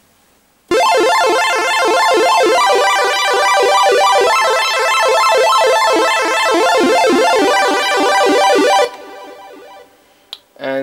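Nord Stage 3 Compact synth section playing a chiptune-style pulse-wave sound through its fast arpeggiator with keyboard hold. Rapid up-and-down arpeggiated notes start about a second in and shift between a few chords. They stop shortly before the end, leaving a faint tail.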